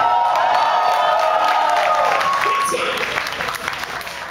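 Concert crowd cheering and clapping as a song ends, with one long shouted voice over the first two seconds. The noise starts to fade near the end.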